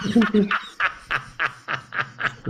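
A man laughing hard: a long run of short breathy bursts, about three a second.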